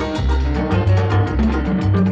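Instrumental passage of a 1963 samba record played back from the disc on a turntable: a bass line pulsing about twice a second under busy Latin percussion and held melody notes, with no singing.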